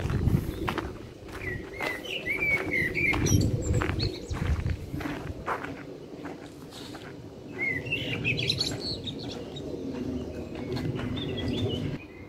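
Small songbirds singing in short chirping phrases, about two seconds in, again around eight to nine seconds, and near the end, over footsteps crunching on a gravel path.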